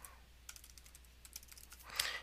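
Faint typing on a computer keyboard: a quick run of about a dozen keystrokes, starting about half a second in.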